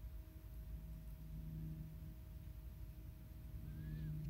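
Faint, steady low hum with no other distinct sounds.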